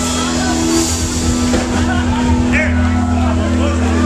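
Live band playing electric guitars, keyboard and drums, with low notes held steady under busy drums and cymbals. Crowd voices can be heard over the music.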